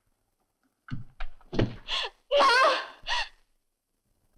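Short gasping vocal bursts about a second in, some with a low thud, then high-pitched wavering cries, a distressed voice gasping and wailing.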